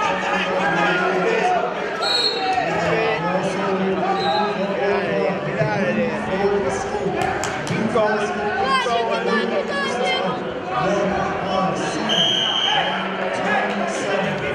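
Spectators and coaches shouting and talking over one another in a gymnasium during a wrestling bout, with a few thumps about halfway through and a short high tone near the end.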